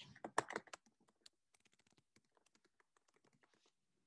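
Faint typing on a computer keyboard: a quick run of key clicks in the first second or so, then fainter, sparser taps.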